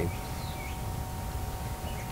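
Outdoor yard ambience: a few faint bird chirps over a low rumble, with a thin steady tone running underneath.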